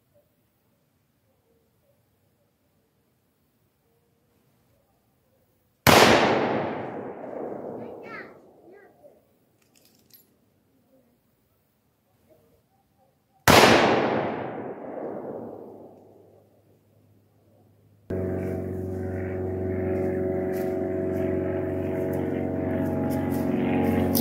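Two rifle shots from a Rossi R95 .30-30 lever-action, about seven and a half seconds apart, each a sharp crack that echoes and fades away over a few seconds while the rifle is being zeroed. Near the end a steady low drone with several held tones starts suddenly and carries on.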